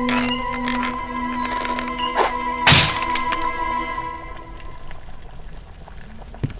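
Cartoon sound effect of a wooden cage crashing to the floor and breaking apart, one loud crack about two and a half seconds in, with a few smaller knocks before it. Background music with held notes plays throughout.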